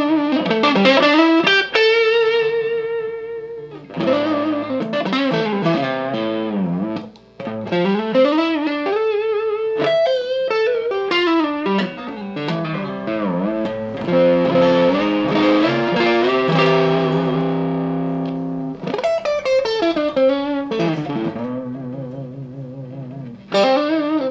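Squier Affinity Stratocaster electric guitar played through an amplifier: single-note melodic lead lines with bent and held notes, pausing briefly a few times.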